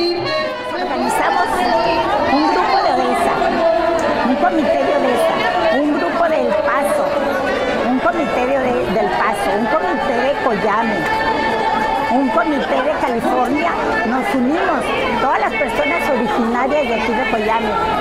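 Crowd of many people talking at once, a steady babble of overlapping voices, with music playing underneath.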